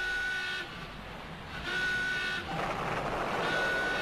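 A steady high tone sounds three times, about every one and a half to two seconds, each time for about half a second, over a low rough noise that grows in the second half.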